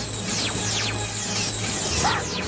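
Cartoon laser-gun shots fired in quick succession, each a high zap that falls sharply in pitch, about three a second, over a low steady hum.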